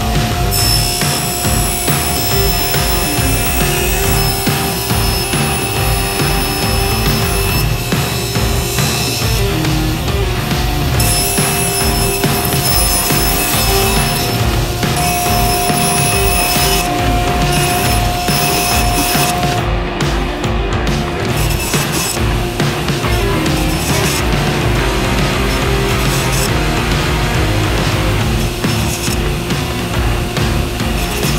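Driving background music with a steady beat over a SawStop table saw ripping through a strip of slippery plastic.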